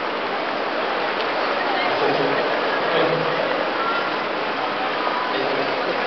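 Crowd murmur: many people talking at once, indistinct and steady, with no single voice standing out.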